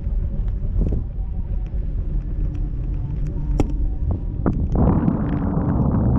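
Wind buffeting a camera microphone hung under a parasail canopy high in the air: a steady low rumble with scattered small clicks, turning into a louder rushing about five seconds in.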